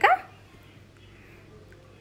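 The tail of a short whining call ends with a quick upward slide just after the start. After it there is only a faint steady hum of background noise.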